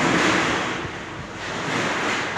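A loud rushing noise that swells twice, peaking just after the start and again near the end.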